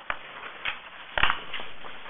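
Handling noise close to the microphone, as paper drawings are shuffled into place: a few short knocks and rustles, the loudest about a second in.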